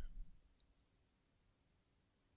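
Near silence, a pause in speech with faint room tone and a faint click about half a second in.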